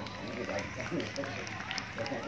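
Faint, indistinct voices of people talking nearby over outdoor background noise, with a few small clicks.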